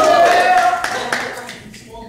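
Audience clapping, with a voice holding one long note over it that stops under a second in. The applause dies away over the next second, as the performer takes the stage.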